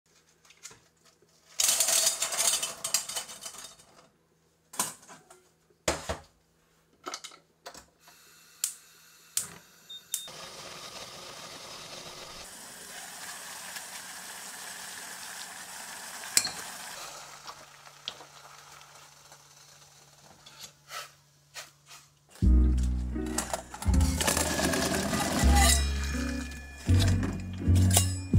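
Stainless steel pot and steamer basket being handled on a gas stove: scattered metallic clinks and knocks, a short noisy burst early, then a steady hiss for several seconds. Background music with a bass beat comes in about 22 seconds in.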